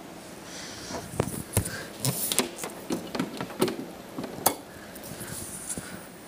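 Small high-voltage static sparks snapping from the charged face of a CRT television to a fingertip and metal pin: an irregular run of sharp cracks, the loudest about four and a half seconds in.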